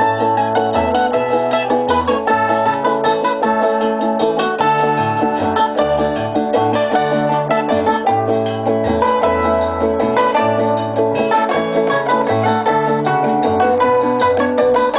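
A live tipiko band playing Curaçaoan folk music: quick plucked strings over a bass line that steps from note to note.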